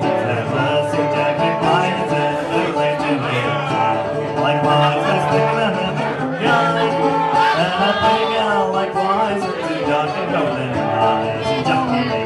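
Live folk song: a man singing while strumming a plucked string instrument.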